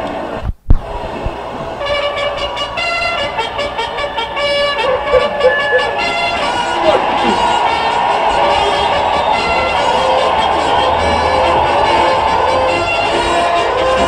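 Orchestra and rock band strike up the introduction to a live song about two seconds in. Sustained horn-like chords build and then hold steady.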